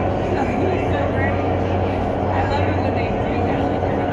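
Indoor skydiving vertical wind tunnel running: a steady rush of air with a low hum, unchanging for the whole stretch, heard through the flight chamber's glass wall while a child flies in the airstream.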